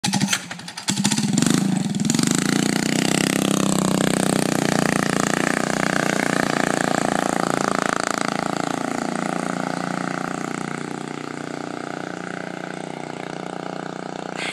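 Small engine on a homemade motorized bike sputtering unevenly at first, then running steadily under throttle as the bike rides off, growing fainter with distance over the last few seconds.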